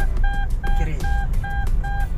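Toyota Avanza Veloz seatbelt reminder chime beeping quickly and evenly, about two to three short beeps a second, the warning for an unfastened seatbelt while driving; really annoying.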